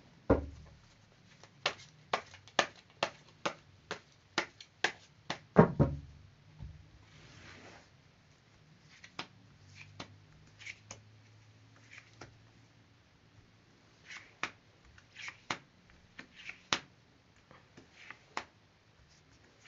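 A deck of tarot cards shuffled by hand, the cards snapping together in a quick run of sharp clicks for the first six seconds. The cards are then spread and slid across a wooden tabletop, with scattered soft taps and clicks.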